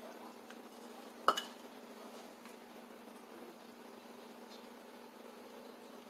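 Water quietly poured from a plastic measuring cup into a blender cup, with one sharp clink a little over a second in. A faint steady hum runs underneath.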